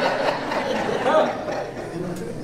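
Soft chuckling and laughter from people in a large hall, dying away.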